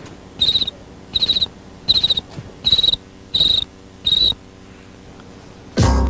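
Cricket chirping sound effect, short trilled chirps repeating about every 0.7 s, the comedy cue for an awkward silence after a joke falls flat. The chirps stop about four seconds in, and a loud hit comes near the end.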